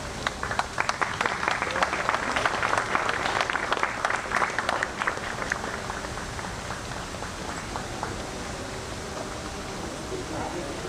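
A small crowd applauding, with individual hand claps audible, building over the first second and dying away about halfway through.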